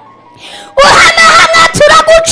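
A woman singing very loudly into a microphone, coming in after a short breath about three-quarters of a second in, with high held notes that bend and waver in pitch.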